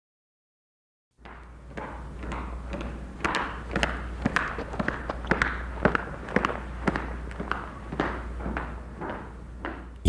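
A low steady hum with irregular crackles and pops over a light hiss, starting about a second in.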